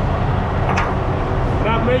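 Diesel semi-truck engine idling steadily: a constant low rumble.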